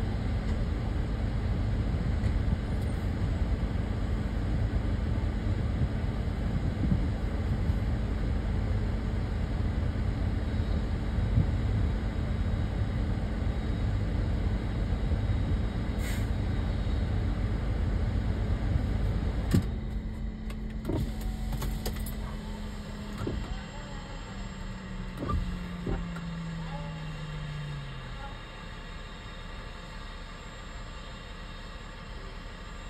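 A vehicle idling with a steady low rumble and hum. About two-thirds of the way through, a click comes and the rumble drops away, while the hum slowly falls in pitch and fades, like a motor winding down.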